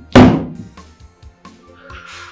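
Dramatic film background music with a soft steady beat, hit by one loud boom just after the start that dies away over about half a second, then a soft swelling whoosh near the end.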